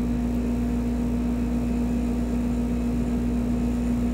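Steady, unchanging room hum: a low rumble with one constant pitched tone over it, holding an even level throughout.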